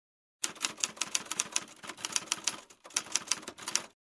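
Rapid typewriter keystrokes, about seven sharp clicks a second, with a short pause a little before three seconds in.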